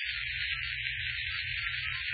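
Radio-drama sound effect for a spaceship launching as the planet Krypton explodes: a steady high hiss over a low rumble.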